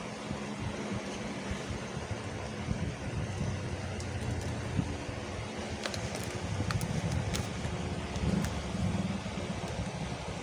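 Taped paper parcel being handled and turned close to the microphone, giving a steady rubbing rustle, then slit open with a utility cutter, with several sharp clicks and scrapes in the second half.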